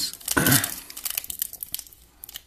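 Foil trading-card pack wrapper being torn open by hand, crinkling and crackling in quick runs, loudest about half a second in.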